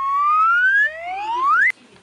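An edited-in whistle-like sound effect of two rising glides: the first climbs slowly, the second sweeps up faster and higher, then cuts off abruptly with a click near the end.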